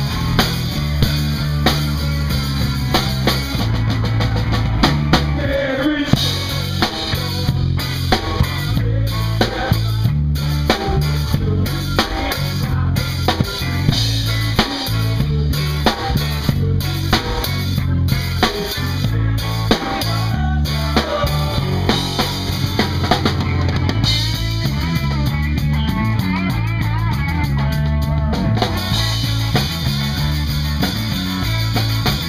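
Live rock band playing, with a close drum kit on top: bass drum, snare and rimshot hits driving the beat over a bass line and guitar. A wavering melodic lead line comes in over the last few seconds.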